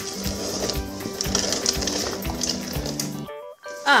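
Background music with a steady beat, which stops suddenly about three seconds in; a voice begins near the end.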